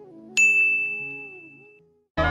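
A single bright bell-like ding, the notification chime of a subscribe-button animation, struck about a third of a second in and fading away over about a second and a half. Soft background music dies out beneath it.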